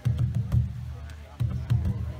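Large rawhide powwow drum played with both hands in a fast, continuous rolling rumble, with a few louder strikes standing out, evoking a waterfall.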